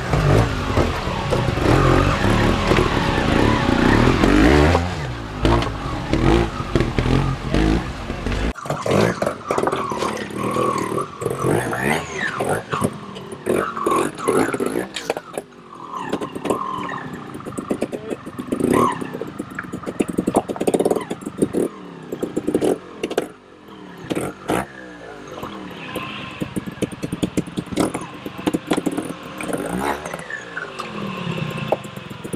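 Trials motorcycle engine revving in short bursts as the bikes pick their way up a rocky section, with knocks and clatter from the tyres and frame striking rock. The first eight seconds or so carry a heavy low rumble; after an abrupt change the revs rise and fall between sharp knocks as the rider struggles over a big rock step.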